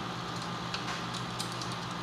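A few faint, scattered light clicks from a small plastic feeding spoon being tapped and worked against the aquarium's top rim to free food stuck to it, over a steady background hum.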